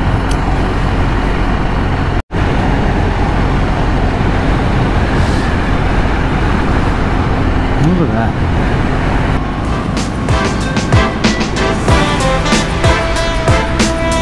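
Wind rush, engine and tyre noise of an adventure motorcycle riding on a gravel road, cut off briefly about two seconds in. Music with a plucked, steady beat comes in at about ten seconds and plays over the riding noise.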